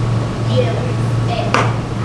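Faint, distant voices of actors on a stage over a steady low hum, with a single sharp tap about one and a half seconds in.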